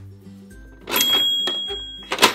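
Toy cash register giving its electronic sale sound about a second in, a sudden ring with a high tone that fades out, as a credit-card payment goes through. Background music plays underneath.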